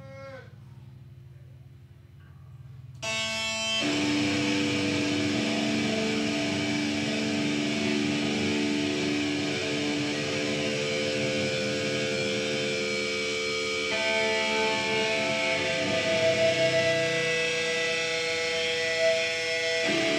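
Live metal band: after about three seconds of low hum, electric guitars, bass and drums come in together suddenly and loud, ringing out held chords. The chord changes about fourteen seconds in.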